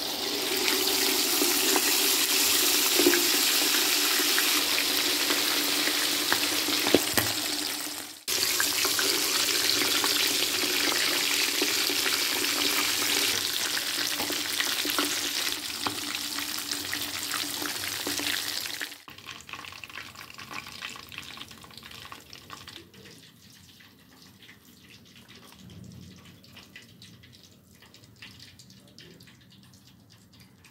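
Steamed, marinated chicken deep-frying in hot oil, a loud steady sizzle. It cuts off sharply about eight seconds in and starts again at once. Around nineteen seconds it drops to a faint crackle.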